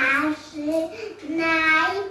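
Young children singing a song, the notes held and moving up and down in pitch.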